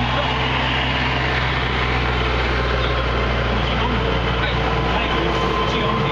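A steady low engine hum, like a motor idling close by, with faint voices in the background.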